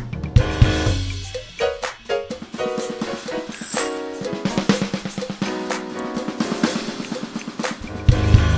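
Acoustic drum kit played over a drumless backing track: heavy bass drum and snare hits open, then a fast run of snare and drum strokes through most of the rest, with cymbals ringing over the sustained pitched notes of the track.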